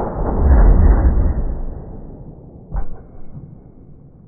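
Slowed-down sound of a Greener harpoon gun firing on a .38 Special blank and its harpoon striking a ballistic-gel target: a deep, drawn-out boom that fades over a couple of seconds, with a second thud near three seconds in.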